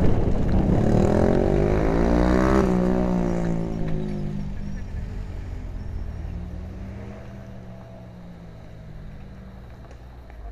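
Mountain bike descending, heard from a helmet camera: rushing noise and rolling rumble with a pitched buzz that rises for about three seconds, then falls and fades as the bike slows.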